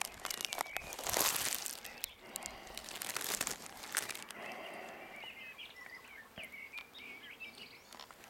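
Close rustling and crackling with sharp clicks in the first half, like cloth or foliage rubbing against the microphone, then birds chirping in short calls for the rest.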